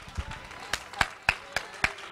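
Hands clapping in a steady rhythm, about four claps a second, starting about half a second in, with faint voices underneath.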